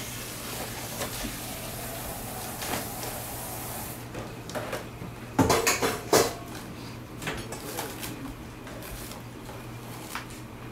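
Food frying in a pan, a steady sizzle that falls away about four seconds in. Then kitchen clatter of pans and utensils, with two loud knocks about five and a half and six seconds in and lighter clicks around them.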